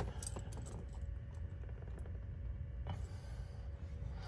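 Quiet background with a low steady hum and a few faint, light clicks scattered through it.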